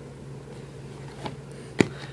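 A cardboard replica-gun box being turned over by hand, mostly quiet over a steady low hum, with a faint tick and then one sharp knock near the end.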